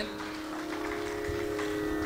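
A steady drone holding one pitch with its overtones: the shruti drone that sounds under a Carnatic music performance.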